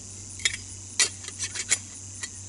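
Stainless steel cups of a Stanley cook set clinking against the pot as they are nested back inside it: three sharp metal clinks with a few lighter taps between.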